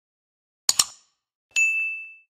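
Subscribe-button sound effects: a quick double mouse click, then, about a second and a half in, a bright bell-notification ding that rings on.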